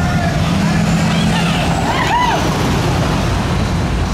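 Engine of a tall-lifted pickup truck running as it drives past in street traffic, a steady low drone.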